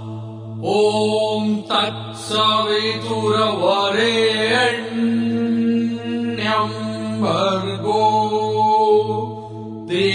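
Male voice chanting a Sanskrit mantra in long, held notes over a steady low drone.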